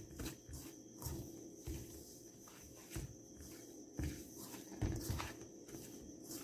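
Faint soft rustling and scattered light thumps of a hand mixing dry flour in a stainless steel bowl.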